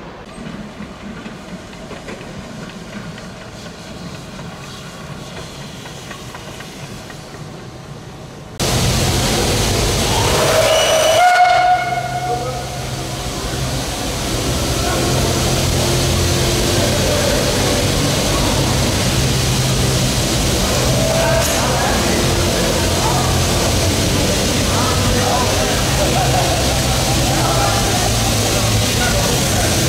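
Steam railcar (UeBB CZm 1/2) giving one whistle blast of about two seconds, its pitch rising slightly before it holds, about ten seconds in. After it comes a steady hiss of escaping steam over a low hum.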